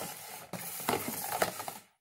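A few sharp plastic clicks and scrapes over a light rustle as a baby-lotion bottle and a spoon are handled over plastic tubs.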